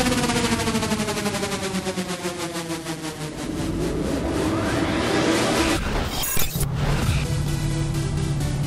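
Electronic dance music: a fast drum roll under a long falling pitch sweep, then a rising sweep, a sudden burst of noise about six seconds in, and after it a different, steady music bed.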